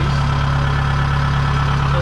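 Kubota DC-70 Plus rice combine harvester's diesel engine running steadily at close range: a constant low drone with no change in pitch or level.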